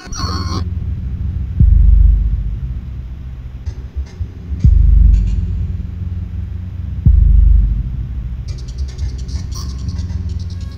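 Trailer score: a low rumbling drone struck by three deep bass booms a few seconds apart, each fading away over about a second. Higher-pitched music comes in near the end.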